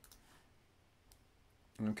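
A faint single click about a second in over low room hiss, with a man starting to speak near the end.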